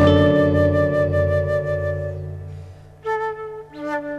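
Concert flute holding long notes over a bowed double bass and nylon-string guitar, the ensemble's sound fading away over the first three seconds. About three seconds in, the flute comes back in with a short new phrase.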